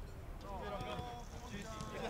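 Footballers calling out to each other during a passing drill, with light thuds of the ball being kicked. The calls start about half a second in.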